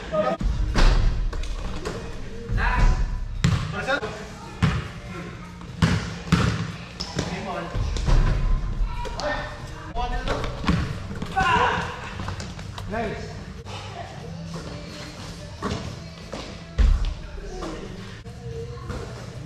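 Basketball bouncing and thudding on an indoor court at irregular intervals during play, with indistinct players' voices and calls in a large echoing gym.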